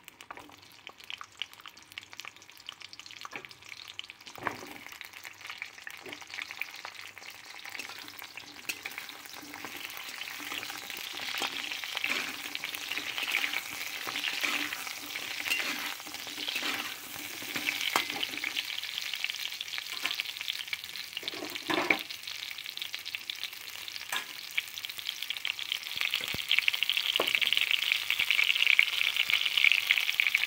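Whole peeled pointed gourds (potol) frying in hot oil in a kadai: a steady sizzle that grows louder toward the end, with a few knocks as they are stirred in the pan.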